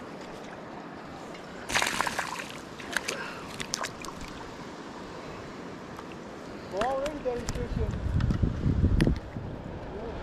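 A small smallmouth bass splashing at the water's surface as it is reeled in, a short burst of splashing about two seconds in followed by a few clicks. Near the end there is low rumbling handling noise as the fish is lifted out and gripped.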